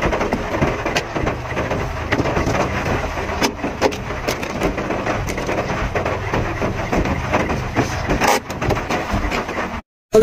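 Heavy rain hitting the roof and windscreen of a car, heard from inside the cabin: a steady hiss with many sharp ticks, which cuts off abruptly near the end.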